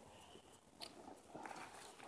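Near silence, with a few faint clicks and rustles.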